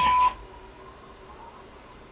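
A steady, high electronic beep tone with noise behind it cuts off suddenly a moment in, leaving only a low, quiet hiss.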